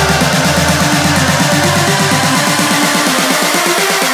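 Instrumental electronic dance music: a fast, repeating synth figure over a heavy bass line, with the bass dropping out about halfway through.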